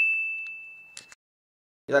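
A single bright bell-like ding, a sound-effect chime marking the approval, ringing at one high pitch and fading for about a second before it is cut off short.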